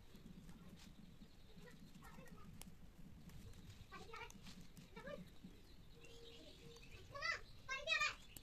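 Faint, distant calls with wavering pitch: a few quiet ones, then two louder calls in quick succession near the end, over a low steady hum.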